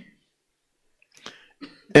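A quiet pause holding only a couple of faint, short breathy noises, then a man's voice comes in loudly right at the end.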